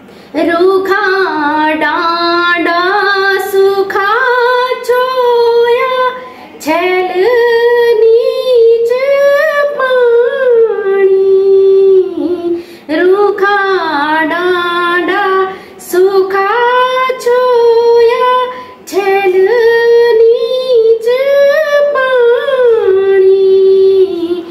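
A woman singing a khuded geet, a Garhwali folk song of longing for the maternal home, unaccompanied. Long sung phrases rise and fall, with short breaths between them about 6, 12, 16 and 19 seconds in.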